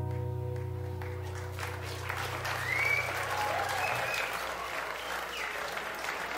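The final strummed chord of an acoustic guitar rings out and fades. Audience applause swells in about a second and a half in, with a few whistles.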